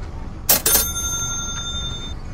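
A bell-like chime sound effect: two quick sharp strikes about half a second in, then a ringing of several bright tones that fades over about a second and a half, like a cash-register 'ka-ching'.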